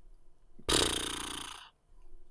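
A single drum sample from FL Studio's RealDrumkit pack, previewed in the browser. It is one hit that starts suddenly, fades over about a second, then cuts off abruptly.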